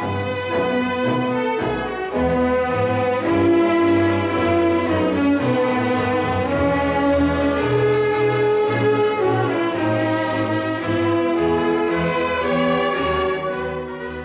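Orchestral film score with strings and brass playing a stately melody in clear, held notes.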